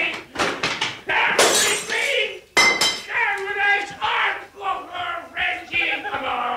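Glass breaking: two sharp crashes, the second ringing, amid drunken men's shouting.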